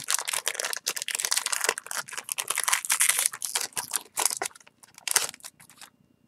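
Foil booster-pack wrapper crinkling and tearing as it is opened by hand: a dense run of crackles that thins to a few scattered clicks after about four seconds.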